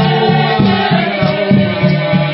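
A choir of several voices singing in harmony over a steady, repeating low drum beat.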